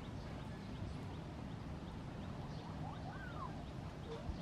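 Outdoor ambience: a steady low rumble, faint short high chirps repeating through it, and one brief rising-then-falling call about three seconds in.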